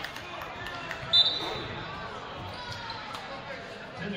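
A short, sharp basketball referee's whistle blast about a second in, the loudest sound, over a ball bouncing on the hardwood, sneaker squeaks and voices in the gym.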